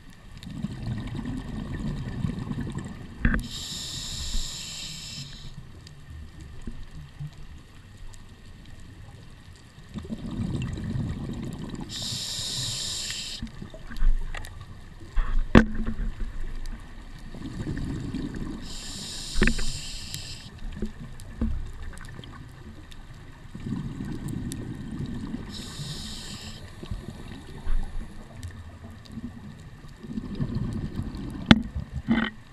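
Scuba diver breathing through a regulator underwater. A short hiss of inhaled air alternates with a few seconds of low, rumbling exhaled bubbles, four breaths about seven seconds apart.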